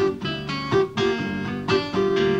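Acoustic guitar strumming chords in a song, with several strokes in quick succession.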